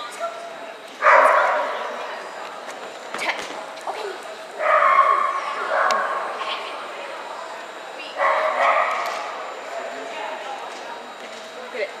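A dog barking and yipping in three excited bursts of about a second each while running; the barking is play.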